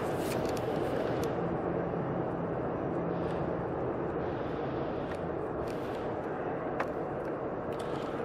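Steady road and engine noise inside a car cabin cruising on a highway, with a faint low hum under it. A single light click near the end.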